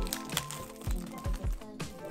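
Background music with a steady beat of low drum hits under held tones.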